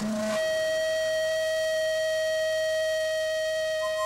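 A single steady musical note held without change, with a second, higher note coming in near the end.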